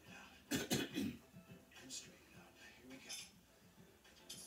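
A person coughing, two or three sharp coughs close together about half a second in, over faint background voice.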